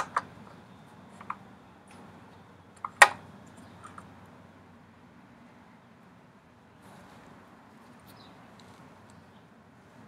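A few short, sharp clicks as the dipstick is pulled from and pushed back into the oil fill tube of a Briggs & Stratton lawn mower engine, the loudest about three seconds in, over a faint steady background.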